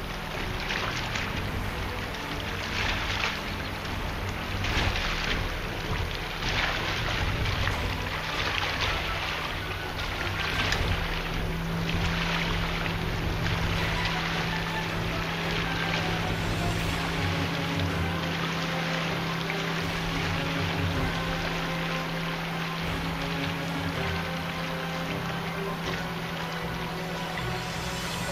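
Steady wind and water noise with irregular gusts, under faint background music with a low sustained note from about halfway through.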